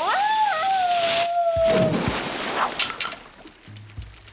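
A cartoon dog's long howling cry, sweeping up and then held and slowly sinking, over a sliding whoosh down a water slide. About a second and a half in comes a splash into the pool.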